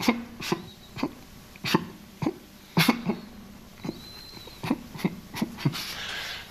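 A man's short, sharp cough-like vocal bursts, about ten at irregular intervals, several dropping in pitch. These are typical of the vocal tics of Tourette's syndrome.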